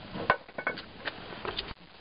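A few light, scattered clicks and knocks on firewood logs from a common brushtail possum moving about in the woodpile.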